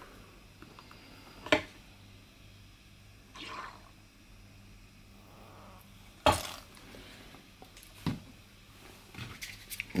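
Quiet handling sounds from filling a small spirit burner with methylated spirits from a plastic needle-tip squeeze bottle: three sharp clicks or knocks, the loudest about six seconds in, and a soft short squirt about three and a half seconds in.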